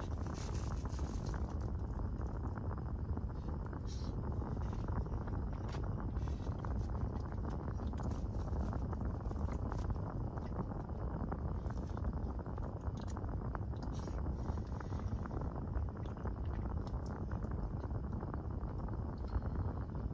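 Steady low rumble heard inside a car cabin, with faint, scattered small clicks and rustles over it.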